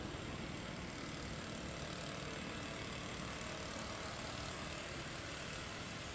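Steady outdoor background noise, a low rumble under an even hiss, with no distinct events.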